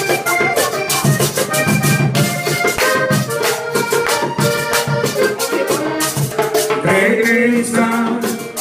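Diatonic button accordion playing a lively vallenato melody, held chords and runs of notes, over a steady fast percussion rhythm.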